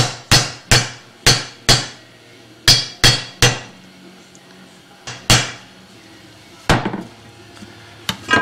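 Hammer striking a steel socket used as a driver to seat the bushing in a Ford C4 transmission's extension housing: metal-on-metal blows with a short ring, a run of five quick taps, then three more, then two single blows with pauses between.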